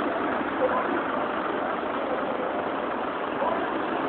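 Steady street traffic noise, with vehicle engines running and faint voices of passers-by.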